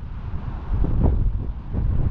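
Wind buffeting an action-camera microphone, a fluctuating low rumble, in a wind of about 15 mph.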